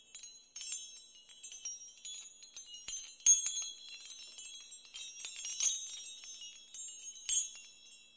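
High, glassy tinkling chimes struck in quick, irregular, overlapping notes that ring on briefly, with nothing lower underneath; the strongest strike comes a little after three seconds in.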